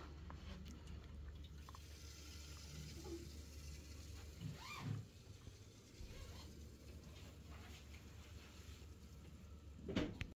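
Faint room tone with a low steady hum, a few soft handling clicks and one brief soft sound about five seconds in.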